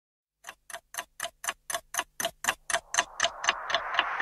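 Clock-like ticking, about four evenly spaced ticks a second, growing louder as the song's intro begins; from about three seconds in, music swells up beneath the ticks.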